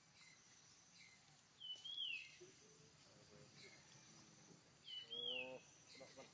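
Forest birds calling: one bird gives the same short whistled note twice, about three seconds apart, each rising and then dropping, over faint chirps from other birds. A brief lower-pitched cry comes near the end.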